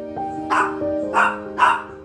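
A dog barking three times in quick succession, short barks roughly half a second apart, over soft, slow instrumental music.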